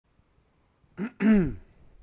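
A man clears his throat about a second in: a short rasp, then a louder hummed sound that falls in pitch.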